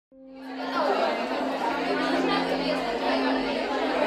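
Many overlapping voices chattering unintelligibly over a sustained low musical drone, fading in over the first second.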